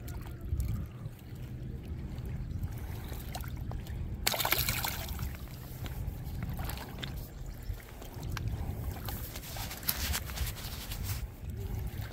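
Small waves lapping against a rocky lake shore under a steady low rumble, with a short splash about four seconds in.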